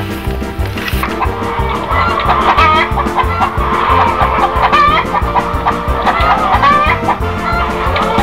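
Hens clucking repeatedly over background music with a steady beat; the clucking starts about a second in and goes on to the end.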